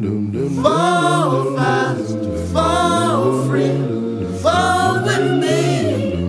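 A cappella vocal music: layered voices, a low sung bass line running under three held higher sung phrases of about a second each.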